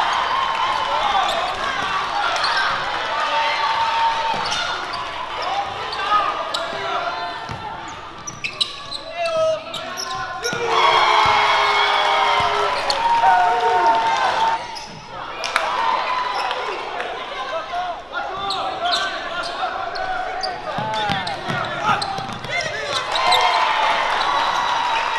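Basketball game in a gym: players and spectators calling out over one another, with a basketball bouncing on the hardwood floor.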